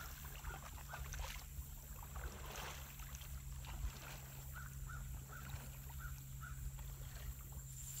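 Faint kayak paddle strokes, the blade dipping and splashing in calm water.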